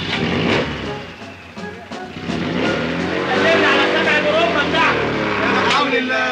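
A car engine revving as the car pulls away: the pitch rises and then falls over the second half, with voices mixed in.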